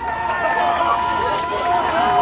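Several young men's voices shouting long, drawn-out cheering calls from a baseball dugout, with a few sharp clicks among them.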